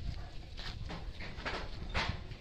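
Irregular scuffing footsteps and rustling on dry, twig- and leaf-strewn garden ground, several short scrapes from about half a second in, over a low rumble of wind or handling on the microphone.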